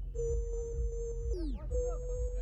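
A steady mid-pitched electronic tone over a low rumble, broken about a second and a half in by a quick smooth falling sweep before the tone comes back.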